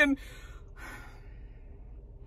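A woman's voice breaks off on a last word, followed by a short breathy sigh about a second in, then only a faint low steady hum.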